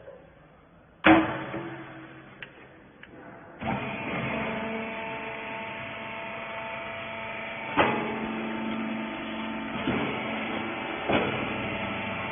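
A metal lid on a small rag baler's loading chamber slams shut with a loud bang about a second in. A few seconds later the baler's motor starts and runs steadily with a hum, with three sharp clunks from the machine over the following seconds.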